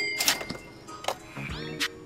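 Short edited-in music sting: a bright chime at the start, then a set of tones that rise and hold about one and a half seconds in.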